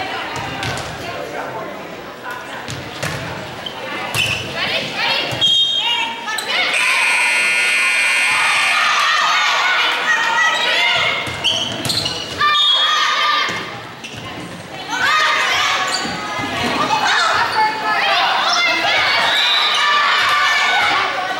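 Volleyball rally in an echoing gym: players' voices calling out and shouting, with sharp smacks of the ball being struck.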